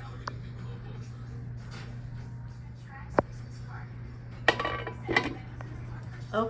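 A steady low hum with a single sharp clink of kitchenware about three seconds in.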